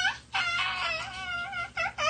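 A young child's high-pitched, squeaky wordless voice with wavering pitch: one drawn-out squeal starting about a third of a second in, then two short squeaks near the end.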